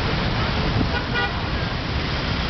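Busy city road traffic: a steady rumble of passing cars and motor scooters, with a brief horn toot about a second in.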